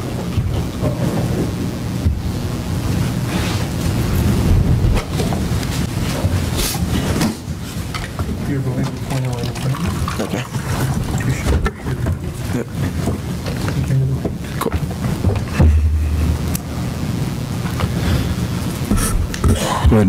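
Courtroom microphone feed full of loud low rumble, knocks and handling noise, with faint, muffled voices underneath. This is the courtroom mics' sound fault.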